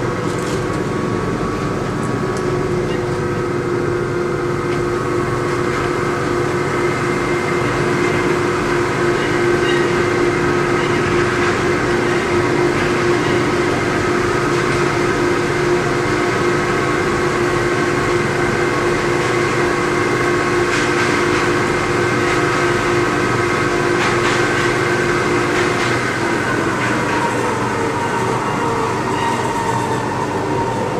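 Von Roll MkIII monorail train running along its beam, heard from inside the car: a steady running noise with a constant whine. Near the end the whine drops in pitch as the train slows for a stop. A couple of faint clicks come about two-thirds of the way in.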